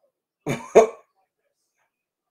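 A man coughing twice in quick succession, about half a second in, the second cough louder.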